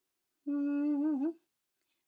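A woman humming one held note through closed lips for about a second, its pitch wavering and dipping near the end.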